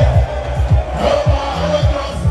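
Loud live-concert music over a big sound system, with a fast deep bass-drum beat and bass line, and a large crowd shouting along.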